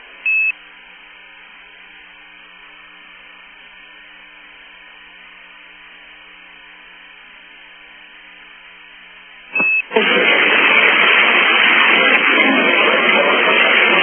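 Space-station air-to-ground radio channel with no one talking: a faint steady hiss and hum, a short high beep just after the start and another about nine and a half seconds in, then loud static hiss filling the channel as the link opens.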